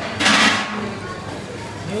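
A metal ladle stirring and splashing broth in a large steel pan of cooked meat: a short, loud sloshing burst about a quarter second in, then quieter kitchen background.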